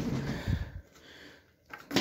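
Light knocks and handling noise from a cardboard product box being moved, with a short low vocal murmur at the start; after about a second it falls almost quiet.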